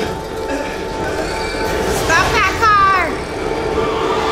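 Soundtrack of an animated episode: a steady low drone with two short falling voice cries about two seconds in.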